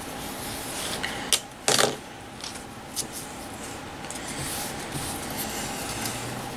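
Crafting tools handled on a self-healing cutting mat while trimming fabric with a rotary cutter and wooden ruler: two light clicks and one short scrape a little under two seconds in, over faint room noise.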